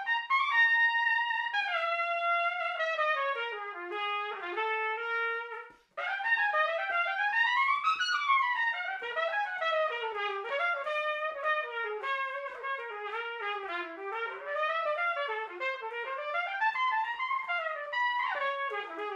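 Unaccompanied piccolo trumpet improvising a jazz line on a B-flat blues. A phrase settles onto a held low note, then there is a brief break about six seconds in. After it comes a quick run up and back down and more winding phrases.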